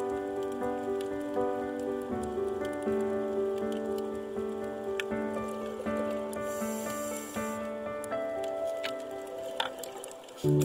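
Background music of sustained, slowly shifting chords, the held notes changing about two seconds in and again near the end.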